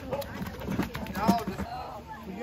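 People talking indistinctly, with scattered voices and a few short clicks.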